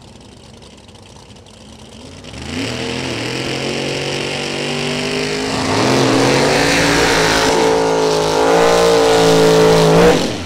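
Drag racing car engines starting up loud about two seconds in, revving in swells that rise and fall in pitch and getting louder, then held at a steady high pitch near the end.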